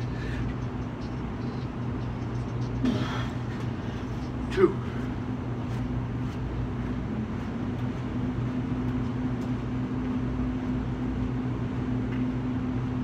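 Steady low mechanical hum of machinery. A man makes two short vocal sounds over it, about three seconds in and, louder, about four and a half seconds in.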